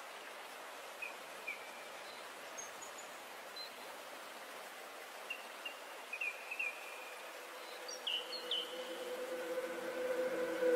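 Faint steady hiss with scattered short bird chirps, a few at a time, getting busier in the second half. A low steady tone begins to fade in near the end.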